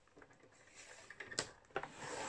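Paper trimmer's scoring cursor being set and slid along its rail to score a fold line in patterned paper: faint scraping and rustling, with a sharp click a little under a second and a half in.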